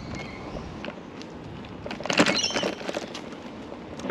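Low, steady riding noise of a bike rolling along a paved road, with wind on the microphone, and a short louder burst of sound about two seconds in.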